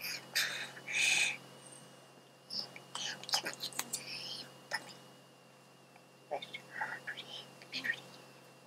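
Soft whispery breath and mouth sounds in short hissy bursts, with scattered sharp clicks.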